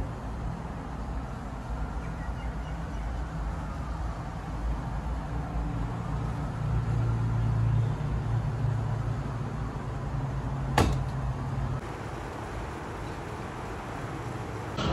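Low steady hum with faint handling noise as the door of a front-loading washing machine is pulled open, and one sharp click about eleven seconds in; the hum drops away about a second after the click.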